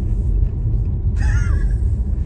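Steady low rumble of a car driving, heard from inside the cabin: engine and road noise. A short high voice sound comes a little past the middle.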